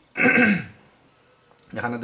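A man clears his throat once near the start. He begins speaking again about a second and a half in.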